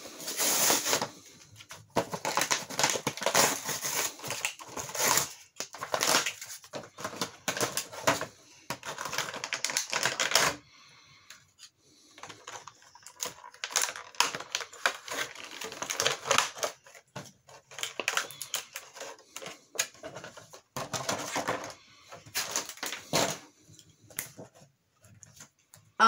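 Clear plastic packaging crinkling and rustling in the hands, with rapid clicks and rattles of hard plastic toy parts as a Power Rangers Megazord figure is unwrapped. It goes in uneven spells, with a short lull about ten seconds in.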